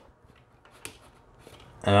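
Faint handling of a plastic action figure: light rubbing and clicking as fingers move its arm and drill accessory, with one small click about a second in. A man starts speaking near the end.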